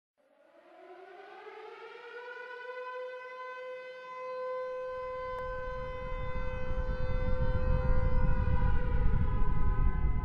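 Synthesized sound effect for an animated logo intro: a humming tone that slides up in pitch over the first second and then holds steady. About five seconds in, a low rumble comes in and grows steadily louder.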